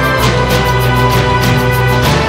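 Opening theme music of a TV documentary series, with a quick steady beat over sustained bass notes.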